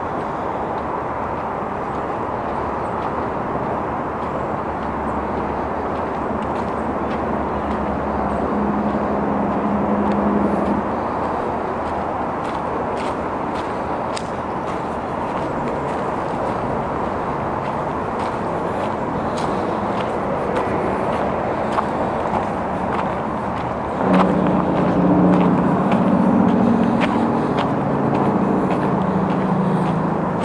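Steady rush of distant road traffic. A lower engine hum swells twice, about eight seconds in and again over the last six seconds.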